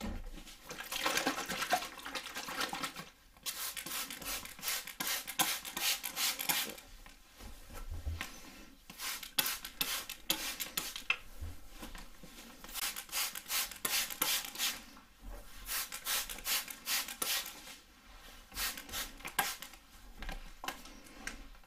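A comb drawn through damp real hair, with a water spray bottle spritzing it, in clusters of quick strokes separated by short pauses.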